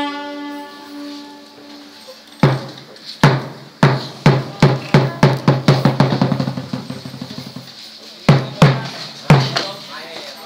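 Nora ensemble percussion: drum strokes that start spaced out and speed up into a fast run, stop, and are followed by three closing strokes. A held pitched tone fades out in the first second.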